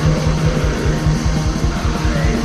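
Black metal demo recording: distorted electric guitars as a dense wash over fast drumming with rapid, evenly repeating low drum hits.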